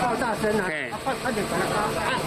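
Speech: a person talking in Mandarin.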